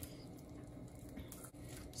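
Faint, soft handling noises of fingers pulling the backbone away from the flesh of a salted mackerel.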